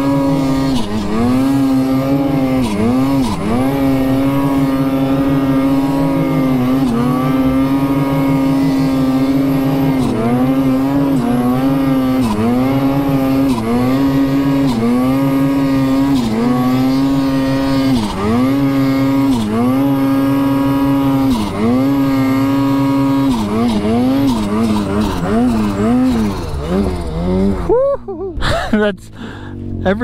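Turbocharged Lynx snowmobile engine running at high revs through deep snow. Its pitch dips briefly and climbs back every second or two. About two seconds before the end it drops off and turns uneven.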